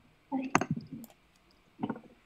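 A sharp click about half a second in, inside a short spoken sound, followed by a few faint clicks and another brief vocal sound near the end.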